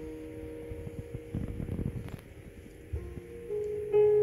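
Grand piano played softly: held notes fade away, a quiet moment follows, and new notes and a louder chord come in near the end.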